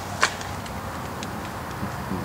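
Room tone: a steady low hiss and hum, with one sharp click about a quarter second in and a couple of faint ticks.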